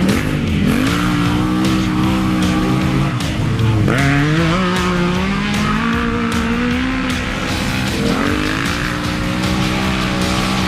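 Race side-by-side engines revving hard as they pass and pull away up a dirt trail. The pitch repeatedly drops and climbs with the throttle, with a long rising rev in the middle.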